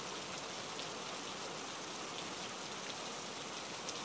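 Steady rain falling, an even hiss at a constant level.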